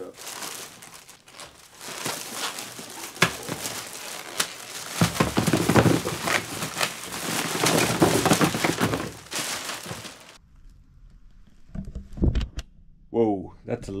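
Large plastic mailer bag crinkling and rustling as it is handled and pulled open, loudest in the middle stretch. It stops abruptly about ten seconds in.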